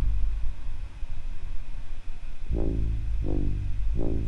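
Synth bass from a TAL-U-NO-LX software synthesizer playing back its basic pattern: a deep, sustained bass tone, with new notes struck about two and a half and three and a quarter seconds in.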